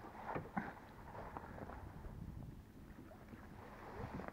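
Faint low rumble of a fishing boat out on a lake, with wind on the microphone, broken by a few light clicks and knocks in the first second or so.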